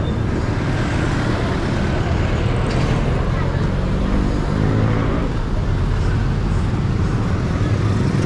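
Close street traffic: cars and motorcycle-sidecar tricycles running and passing at low speed, a steady engine noise, with one engine's hum standing out around the middle.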